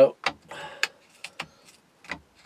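A few light, irregular clicks and knocks as a softwood strip is handled in the hole of a metal dowel-making jig.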